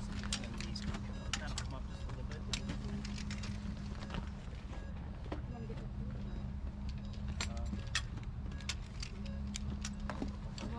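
A vehicle engine idling steadily under frequent sharp clicks and clinks of buckles, clips and equipment being handled on a stretcher.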